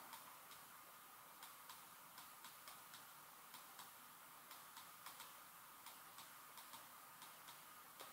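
Near silence, with faint, irregular ticks a few times a second from a stylus tapping and stroking on a tablet screen as handwriting is written.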